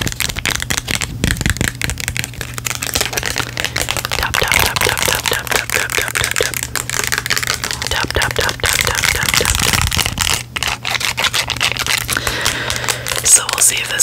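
Close-miked fingernails tapping, scratching and crinkling a small plastic product packet: a dense, uneven run of quick clicks and crackles.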